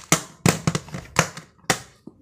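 Plastic 3x3 puzzle cube being turned rapidly by hand: quick sharp clacks of the layers snapping round, about four a second, stopping near the end.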